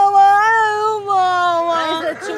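A young woman's wordless, high-pitched wail, held as one long note that slowly falls in pitch. Other voices break in near the end.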